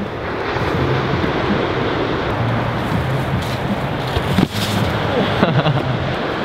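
Wind buffeting the microphone: a steady rushing noise, with one sharp click about four and a half seconds in.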